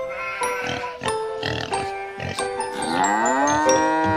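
Instrumental children's-song backing with short plucked notes, then, about three seconds in, a cartoon cow sound effect: one long moo that rises and then falls in pitch over the music.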